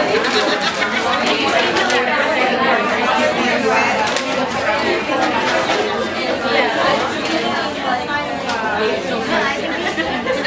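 Chatter of many women talking at once around banquet tables in a large room. A few short sharp clicks can be heard now and then.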